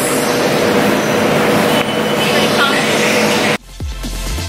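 Steady, noisy room sound of a large gym, with a faint steady hum and faint voices. It cuts off suddenly about three and a half seconds in, and electronic music with a deep bass beat starts.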